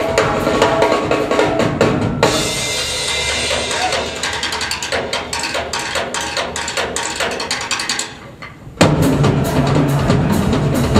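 Drum kit played fast with dense tom and snare strokes. About two seconds in, cymbals wash over the playing, which shifts to quick, lighter strokes. After a brief dip just past eight seconds, the full kit comes back in loud with bass drum and toms.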